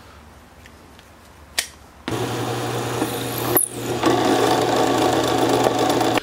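Drill press starts about two seconds in and runs steadily, drilling a small set-screw hole into an oak block, with one brief break partway through. Before it, quiet handling and a single click.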